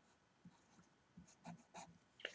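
Faint marker writing on paper: a few short scratchy strokes in the second half as the figures are written.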